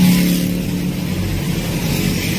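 Engine hum and road noise of a motor vehicle driving steadily, heard from inside its cabin.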